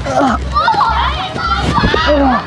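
Excited voices calling out without clear words, over background music with a steady low beat about twice a second.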